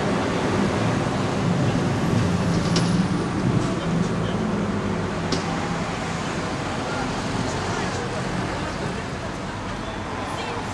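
Steady street traffic noise, with indistinct voices talking in the background during the first half.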